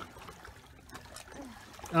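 Small waves lapping and trickling against a flat rock shelf, faint and steady.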